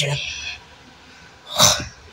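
A single short sneeze from a boy close to the phone's microphone, about a second and a half in, following the end of a spoken word at the start.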